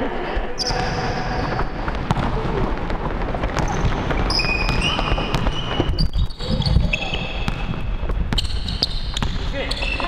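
Basketball being played on a hardwood gym floor: the ball bouncing, short high-pitched sneaker squeaks, and players' voices.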